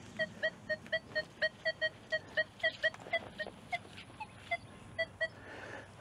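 Nokta Triple Score metal detector giving short, high, pitched target beeps, about four a second as the coil sweeps, thinning out after about three seconds. The detectorist thinks the target is a twist-top bottle cap.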